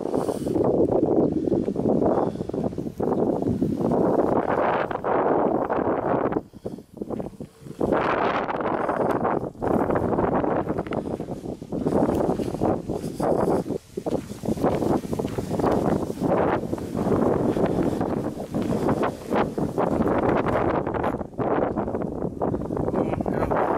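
Strong wind buffeting the camera's microphone in uneven gusts, with a short lull about six and a half seconds in.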